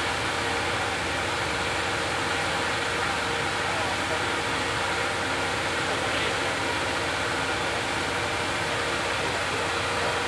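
Steady hum and rumble of a stopped passenger train idling at a station platform, constant in level, with faint voices in the background.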